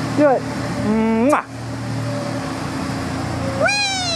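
Wordless high vocal calls from a person: a short falling squeal just after the start, a rising call about a second in, and a call near the end that rises and then falls away.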